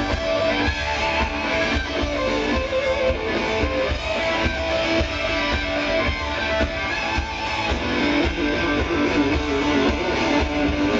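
Hard rock band playing live through a festival PA: distorted electric guitars over a steady drum beat, loud and continuous.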